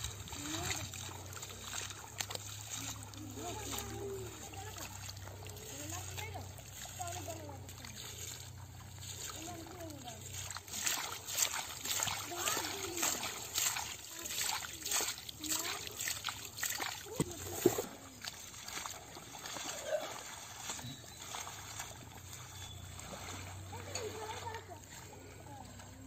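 Hands splashing and squelching through wet mud and shallow water, in bursts of short wet slaps that come thickest and loudest from about eleven to seventeen seconds in. Faint voices talk in the background.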